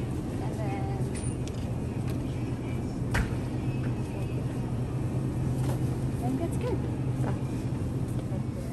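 Supermarket background: a steady low hum with faint voices in the distance. A single knock about three seconds in.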